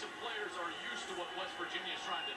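Television sports broadcast heard through the TV's speaker: a play-by-play commentator talking before a football snap.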